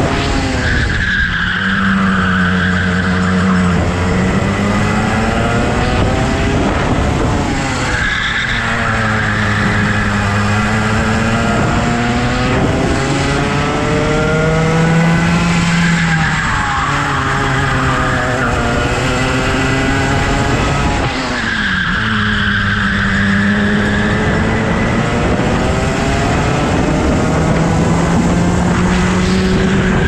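Go-kart engine heard from on board, its revs dropping into each corner and climbing again on the straights, about four times. In the slow stretches there is a steady hiss of the tyres scrubbing through the corners.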